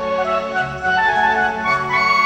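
Instrumental interlude of a Hindi film song: a flute plays a melody of held notes over keyboard and orchestral backing. It is a dull-sounding recording from an old videotape.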